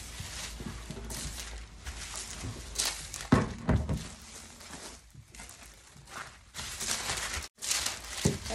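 Clothes iron sliding over baking paper on a plastic sheet, heat-fusing the plastic around crisp packets, with the plastic rustling as the sheet is handled and turned over. Two sharp thumps a little past three seconds in are the loudest sounds.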